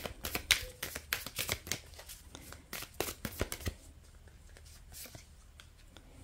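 Tarot cards being shuffled and handled by hand: a quick run of crisp flicks and snaps for about the first three and a half seconds, then only a few light taps.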